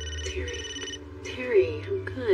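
A telephone ringing: a steady high electronic ring for about the first second, over a low background music bed, followed by a voice in the second half.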